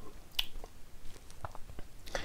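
A few faint, short wet mouth clicks and lip smacks as the taster savours the long finish of a cask-strength whisky still on his tongue.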